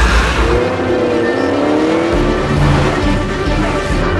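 Chevrolet Camaro engine accelerating: its note rises for about a second and a half, then settles into a deeper rumble.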